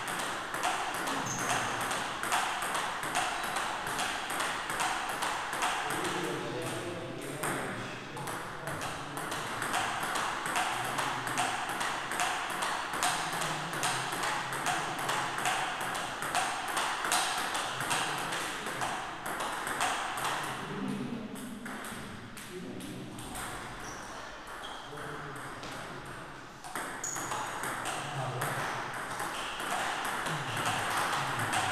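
Table tennis practice rally: a celluloid-type ball struck back and forth, a quick, steady run of hollow clicks from the bats and the table, with ball strikes from other tables mixed in.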